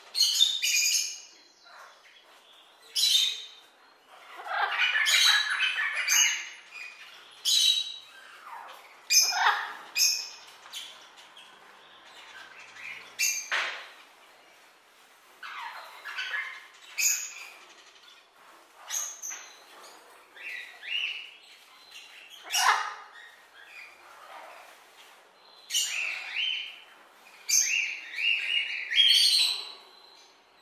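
Birds calling: about a dozen short, high-pitched calls, one every second or two, with quieter pauses between them.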